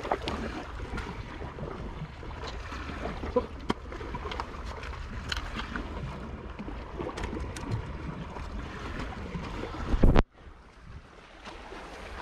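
Sea water washing against shoreline rocks, with wind rumbling on the microphone and scattered small clicks and knocks. About ten seconds in, a loud low knock on the microphone is followed by a sudden drop in sound.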